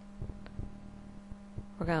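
Steady low-pitched electrical hum under a faint hiss, and a voice starts speaking near the end.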